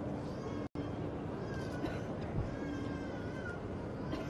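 Steady outdoor background noise of a hushed gathering, with a faint, high, wavering call heard twice in the middle. The sound cuts out for an instant just under a second in.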